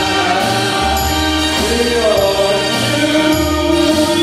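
A small band playing live: electric guitar, keyboard and tambourine under a held, sustained sung vocal, with a steady bass line changing note about every half second.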